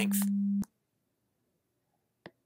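Steady 200 Hz sine-wave tone from a function generator, which cuts off abruptly with a click about half a second in.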